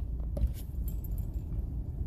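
A pause in speech: a steady low background rumble with a few faint clicks in the first half second.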